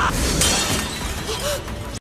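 Fight sound effects from an anime soundtrack: a dense noisy rush with a sharp crash about half a second in, fading toward the end.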